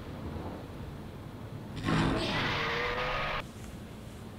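A sudden noisy sound effect from a TV episode's soundtrack, starting about two seconds in and cutting off abruptly about a second and a half later, with a few steady tones running through the noise; the soundtrack is faint before and after it.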